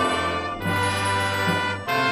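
School band of brass and woodwind instruments playing held chords together, moving to a new chord about half a second in and breaking off briefly near the end.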